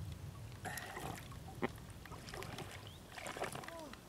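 Small water splashes and drips from hands paddling a foam float through calm lake water, in scattered soft ticks and sloshes.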